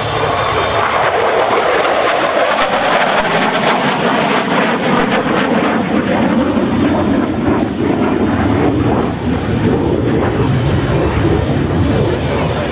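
Jet noise of a USAF F-16 Fighting Falcon's single engine in display flight: a loud, steady rushing whose pitch sinks slowly as the jet draws away.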